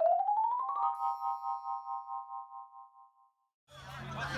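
An edited-in musical sound effect: a quick upward sweep in pitch that lands on a bell-like chord, which rings and fades away over about two seconds. Outdoor background sound returns near the end.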